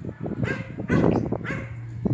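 A dog barking, short barks about a second apart, over a steady low hum.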